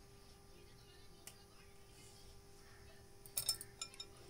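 A wooden skewer and marinated pieces knocking lightly against a glass bowl as paneer tikka pieces are threaded onto the skewer: a faint click about a second in, then a quick cluster of small clinks past three seconds.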